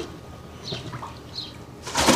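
A quiet pause, then near the end the loud splash of a person diving headfirst into a swimming pool.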